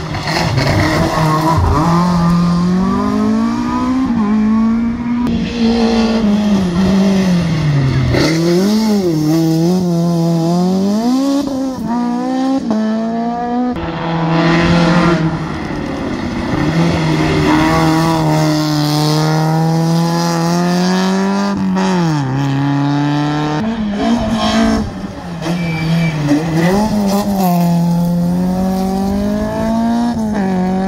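Rally car engines revving hard through a hairpin. The engine note climbs and drops again and again as the cars brake, change gear and accelerate out of the corner.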